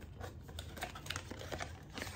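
Light, irregular clicks and taps of a small white paperboard gift box being handled and opened, over a steady low hum.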